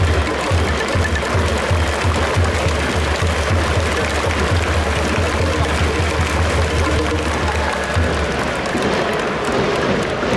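Ballpark cheering music for the batter at a Japanese pro baseball game, carried by a steady, fast drumbeat that stops about nine seconds in, over a dense crowd-and-music backdrop.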